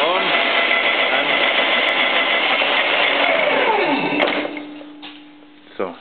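Stanko 6R12 milling machine spindle and gearbox running loudly, then braked to a stop: the whine falls away in pitch within about a second, a click follows, and a low steady hum remains. The spindle brake stops it quickly, which the owner takes as the brake working right after adjustment.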